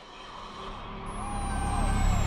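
Swelling intro sound effect under a title: a deep rumble and hiss growing steadily louder, with a thin high whistle gliding slowly down, building up to an electronic music track.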